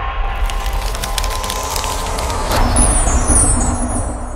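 Logo-intro sound effect: a deep rumble under a rising wash of noise and crackles, ending in a hit about two and a half seconds in, followed by bright, high ringing tones that slide downward.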